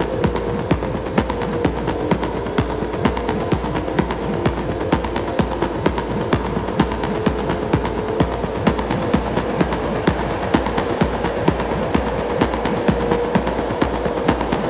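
Dark, hypnotic techno: a steady kick drum at about two beats a second under a dense, hissing texture of fine clicks and a held drone.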